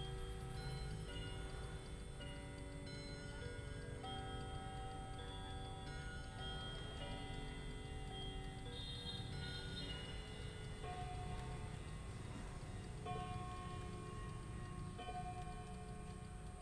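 German three-train pendulum clock playing its chime tune: hammers strike brass rod gongs in turn, each note ringing on into the next. It has eight hammers but only six gongs, so some hammers share a gong.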